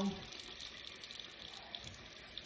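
Bathroom tap running faintly and steadily into a sink.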